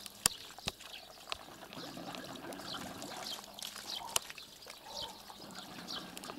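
Small birds chirping with short, high, falling notes, over a faint trickle of running water from the well pump. A few sharp clicks stand out, near the start and about four seconds in.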